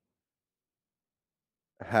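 Dead silence with no room tone, as in an edited-out pause, until a man's voice resumes near the end.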